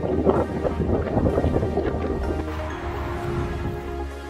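Background music with held tones over a steady bass. Over the first two and a half seconds or so, a rough rustling noise of wind on the microphone sits over it.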